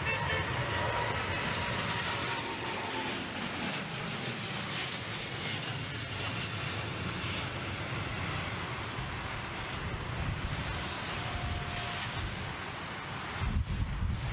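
Boeing 787 jet engines at go-around thrust as the airliner climbs away from an aborted landing, a steady jet noise with a faint whine that sinks slightly in pitch over the first few seconds. Storm wind buffets the microphone throughout, with heavy gusts near the end.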